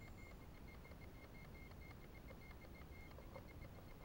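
Near silence: faint outdoor background with a thin, high-pitched tone pulsing evenly throughout.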